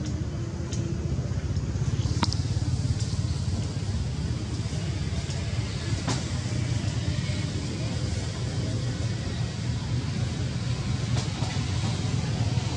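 A steady low rumble, with a few faint sharp clicks.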